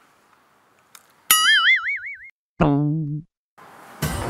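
Two cartoon 'boing' sound effects: a high, wobbling one about a second in, then a second that wobbles and drops steeply in pitch.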